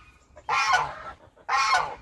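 Domestic geese honking: two harsh honks about a second apart.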